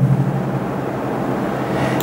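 Steady background noise: a low hum with hiss underneath, no distinct events.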